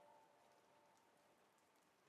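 Near silence as the song ends: the last faint sustained note of the outro dies away just after the start, leaving only faint hiss.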